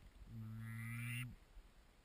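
A duck call blown in one drawn-out note of about a second, even in pitch, growing slightly louder before it stops.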